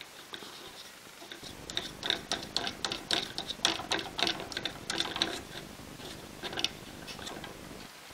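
Small standoffs being fitted by hand onto a carbon-fibre drone frame: a quick, irregular run of clicks and taps that starts about a second and a half in and thins out near the end.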